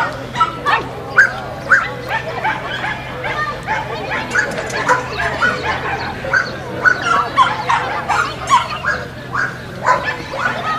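A dog barking over and over in quick succession, roughly two short barks a second.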